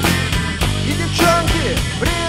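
Instrumental break of a rock song played by a band of drums, bass and guitar, with no singing. Drum hits keep a regular beat under a lead line of sliding, bending notes.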